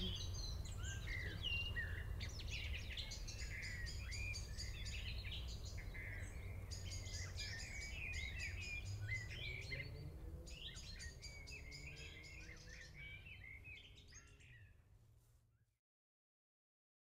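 Wild birds singing and calling, several overlapping at once, over a low steady background rumble, the whole fading out gradually near the end.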